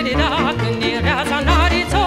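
Romanian folk music from Bucovina: a melody with a wide, wavering vibrato over a band's repeated bass notes.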